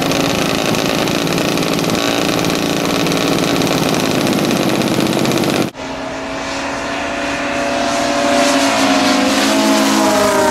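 Large-scale model airplane engines running steadily. After an abrupt cut about six seconds in, the drone of model warplane engines flying overhead, its pitch wavering up and down as they pass.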